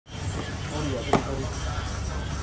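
A single sharp thump about a second in: a whole durian being set down on a stainless steel table.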